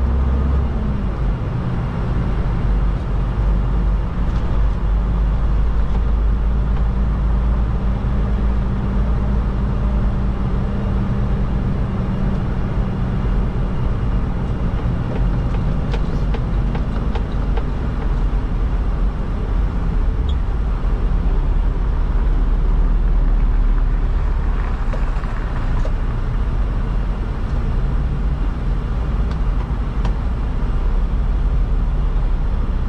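Semi-truck diesel engine running, heard from inside the cab as the truck drives slowly: a steady low drone with a few light cab clicks near the middle.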